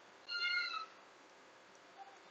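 A single short, high-pitched animal call, about half a second long, its pitch dipping slightly at the end, over faint room hiss.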